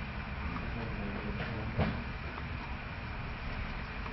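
Steady low background rumble, with one short sound standing out just under two seconds in.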